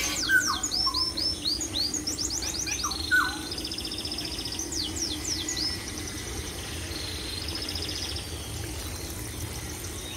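Small birds chirping and trilling: rapid series of quick down-slurred chirps and buzzy trills, busiest in the first six seconds and thinning out after. A steady low hum runs underneath.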